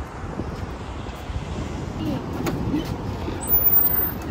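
Outdoor roadway ambience: a steady rumble of passing traffic, with faint voices around the middle and a short louder stretch near the end.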